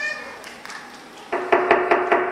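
A quick run of five or six sharp knocks, starting a little past halfway: knocking at a door.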